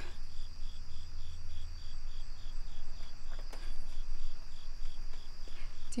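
Crickets chirping steadily in an even rhythm of about two to three pulses a second over a continuous high trill, with a low hum underneath that fades about two seconds in.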